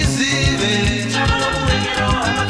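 Zimbabwean band music in an instrumental passage: guitars over a moving bass line and a quick, steady beat, with no singing.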